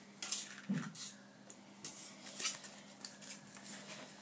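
Light, scattered clicks and rattles of small plastic parts being handled: a slot car body being readied to fit onto its chassis, with its controller wires being moved.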